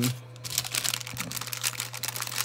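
Clear plastic bag crinkling as a hand rummages in it for a wooden craft stick: a dense run of small, quick crackles.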